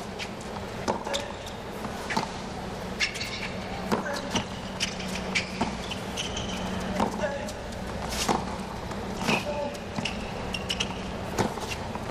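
A hard-court tennis rally: racket strikes on the ball and footfalls give sharp clicks about every second, with short squeaks of shoes on the court, over a steady crowd murmur.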